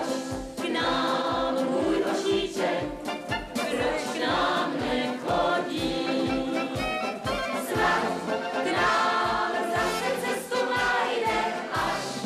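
A group of voices singing a song together over instrumental accompaniment, with a steady, regular bass beat.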